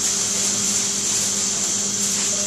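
Steady hiss of continuous gas flow from a CareFusion Infant Flow SiPAP driver and its patient circuit running in nasal CPAP mode, with a low steady hum underneath.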